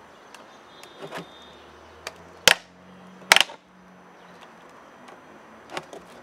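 Two sharp knocks about a second apart near the middle, with a few lighter taps, from a thin plastic water jug being handled while a soldering iron is pushed through its wall to pierce drainage holes.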